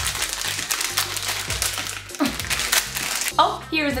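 Plastic candy wrapper crinkling and tearing as it is opened, stopping shortly before the end, over background music.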